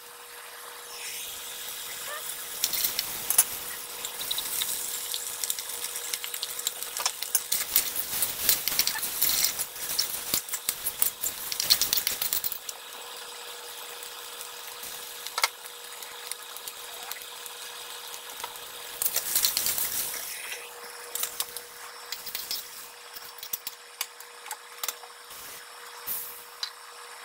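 Rice being stir-fried in a wok: a spatula scrapes and clinks against the pan over sizzling. It is busiest for the first half, quieter in the middle and busy again briefly later, with a steady hum underneath throughout.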